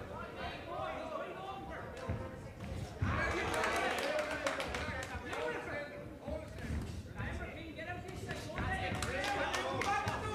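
Amateur boxing bout: voices of coaches and spectators calling out, with repeated sharp thuds of gloved punches and feet on the ring canvas, the thuds coming thickest from about three seconds in.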